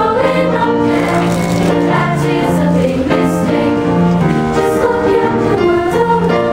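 Middle-school choir singing a Disney song medley with held, changing notes.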